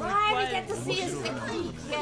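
Several voices talking over one another: overlapping chatter from a group of people reacting at once.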